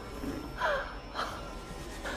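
A startled person's short, quiet gasps, the first falling in pitch and a second shorter one about a second in, in the shaken moments after a fright.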